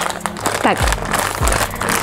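Hands squeezing and crinkling a mailer bag to feel the item inside, a dense crackling rustle, over background music.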